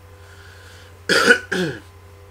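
A man coughing twice into his hand, a harsh cough about a second in with a shorter second cough right after it, over a steady low electrical hum.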